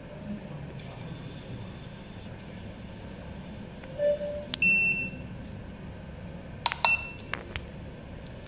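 Electronic beeps from a JITAIKEYI JD520 portable surface roughness tester as it is operated. A short lower tone sounds about four seconds in. Half a second later comes a higher beep with a click, and near the end a few clicks come with another higher beep.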